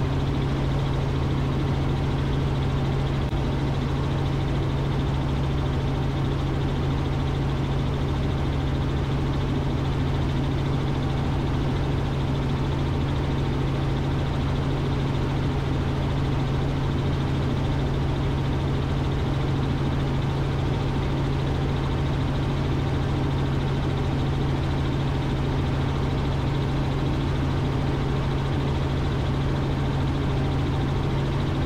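Robinson R44 helicopter in cruise flight, heard from inside the cockpit: a steady drone of its six-cylinder Lycoming piston engine and rotors, with a strong low hum.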